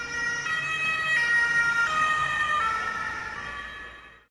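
Ambulance siren sound effect, swelling up and fading away near the end, its pitch shifting in a few steps.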